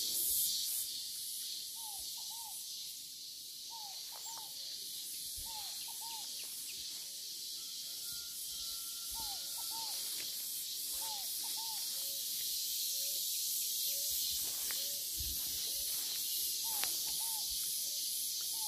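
A steady, high, hissing chorus of insects, with a bird repeating short paired whistled notes every couple of seconds and softer, lower single notes in between.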